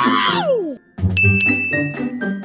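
Upbeat background music with a comic falling pitch swoop at the start, a brief break, then a single bright bell-like ding about a second in that rings on for about a second.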